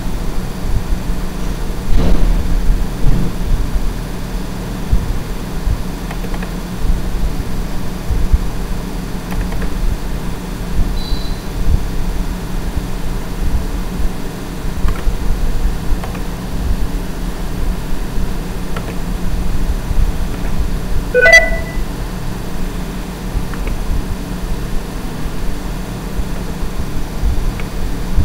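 A steady low rumble of background noise, with a short pitched chirp about three-quarters of the way in.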